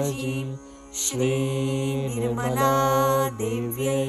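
Devotional Sanskrit mantra chanting, sung as music in phrases held on steady pitches. There are short breaks between phrases, about half a second in and again near the end.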